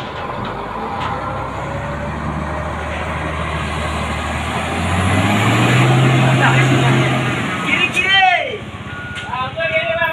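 Heavy three-axle dump truck's diesel engine labouring up a steep hairpin: a steady drone whose revs rise and grow louder about halfway, then drop off after about seven seconds. Near the end, people's shouting voices.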